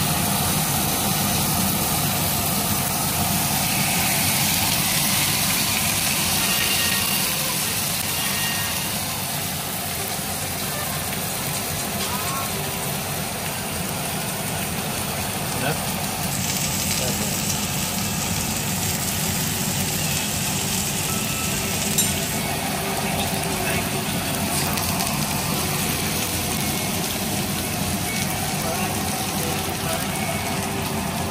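Two ribeye steaks sizzling in a hot frying pan on a gas stove, searing with butter in the pan, over a steady low hum.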